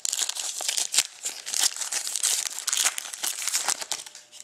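Foil wrapper of a trading-card pack being torn open and crinkled by hand, a continuous dense crackle that thins out near the end.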